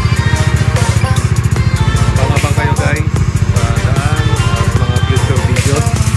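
Music with a sung melody, over the fast, even low pulsing of an idling Bajaj Dominar 400 single-cylinder motorcycle engine.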